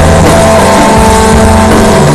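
Loud live stoner-rock playing: a heavily distorted hollow-body electric guitar holding notes through an amplifier, over a drum kit.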